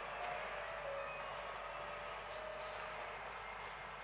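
Quiet theatre auditorium ambience, a steady hiss, with faint short held tones of low stage music.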